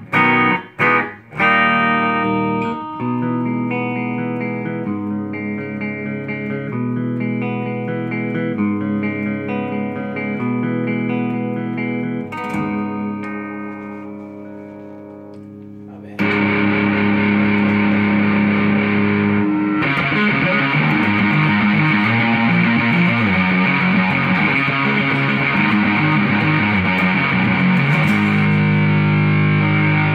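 Custom electric guitar played through a Mesa Boogie amp: picked notes and chords in a cleaner tone, left ringing and fading, then about halfway through a sudden switch to a heavily distorted tone with fast, dense riffing.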